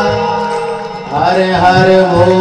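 Devotional singing with accompaniment: a long held sung note over a steady drone, then the voice slides up into a new note just past the middle.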